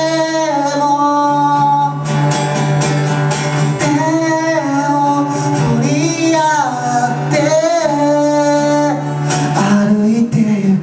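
A live pop-rock band playing a song: sung vocals carrying a sliding melody over guitars, keyboard, bass and drums.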